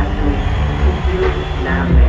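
A ballad performed live through a stadium sound system, with long held notes over a heavy, booming low end and the hall's echo, heard from within the crowd.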